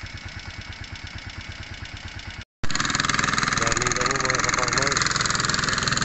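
A small engine idling with a steady, even chug. After a sudden cut about two and a half seconds in, a louder running noise continues with voices in it.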